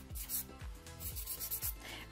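A fine-grit nail file rubbing across a thumbnail in short strokes, filing off leftover gel from the nail surface. The filing is faint, under soft background music.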